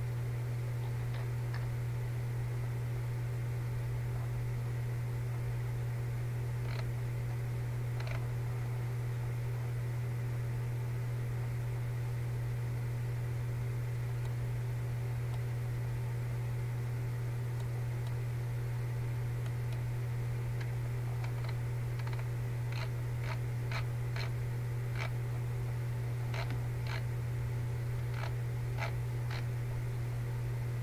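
Steady low electrical hum with a faint hiss, and faint scattered clicks, most of them in a run near the end.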